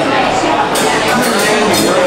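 A man's voice over a live band of electric guitar, bass and drums, with cymbal hits through the second half.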